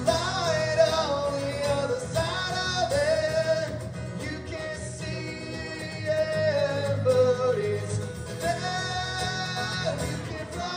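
A man sings to his own strummed acoustic guitar in a live performance, holding long, wavering sung notes over steady chords.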